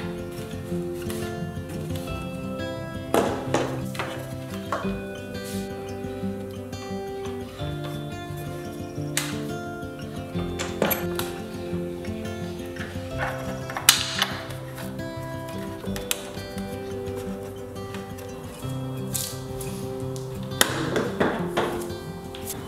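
Background music with held notes, with a handful of sharp, irregularly spaced knocks and clinks through it; the loudest comes about two-thirds of the way in.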